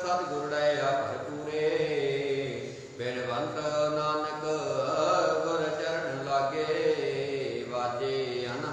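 A man chanting Gurbani verses in a drawn-out, melodic recitation with long held notes that glide in pitch, pausing briefly about three seconds in.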